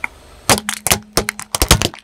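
Liquid-filled plastic syringes cracking and bursting one after another under a rolling car tyre: a rapid run of sharp cracks starting about half a second in.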